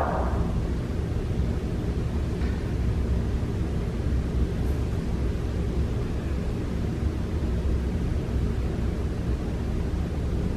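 A steady low rumble with a hiss over it, holding level without a break.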